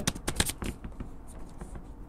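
Computer keyboard being typed: a quick run of key clicks in the first second, then fainter, sparser clicks.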